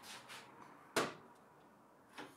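Softwood timber and a steel corner bracket being shifted by hand: a soft scraping, then a single sharp knock about a second in.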